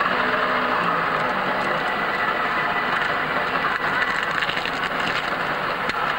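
Steady city street traffic noise, an even wash of passing vehicles with a faint low engine hum in the first couple of seconds.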